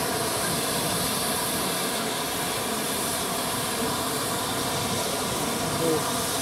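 Steady hiss of steam escaping from GWR Castle-class steam locomotives standing in steam, with no sudden changes.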